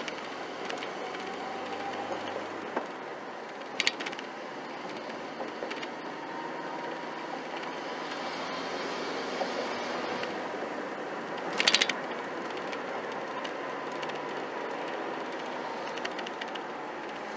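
Cab interior of a 1995 Ford Ranger with a swapped-in 2.5-litre four-cylinder engine, the engine pulling steadily at part throttle as the truck gathers speed, over road and tyre noise. Two brief rattles, about four seconds in and again near twelve seconds, stand out as the loudest sounds.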